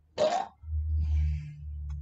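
A man's low chuckle with his mouth closed, in two short pushes, just after a single spoken word.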